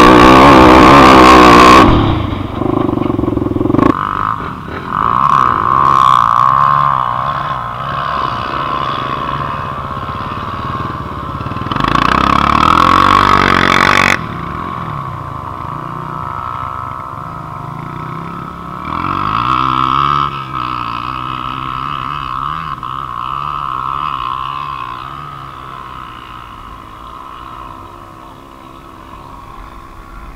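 Dirt bike engine at full throttle on a steep hill climb, dropping off sharply about two seconds in. Motorbike engines then rise and fall more quietly a few times, fading toward the end.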